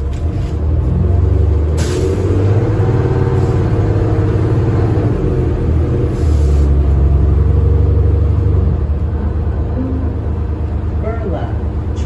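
Cabin sound of a 2013 New Flyer Xcelsior XD40 transit bus under way. Its Cummins ISL9 diesel engine drones loudly, its pitch rising and then dropping back about five seconds in. Short hisses of air come about two and about six and a half seconds in, and voices come in near the end.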